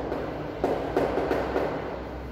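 Chalk scratching across a blackboard as words are written, with a few short taps as the chalk strikes the board.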